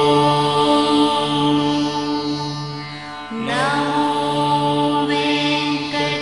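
Indian devotional music: a long, held chanted line over a steady drone. About three seconds in it briefly dips, then starts again on a note that rises into place.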